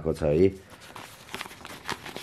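A man's voice for the first half second, then soft rustling of a folded paper card being handled and opened, with a couple of small clicks.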